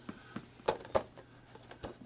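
A few faint taps and rustles of a cardboard Funko Pop box with a plastic window being handled and turned over in the hands.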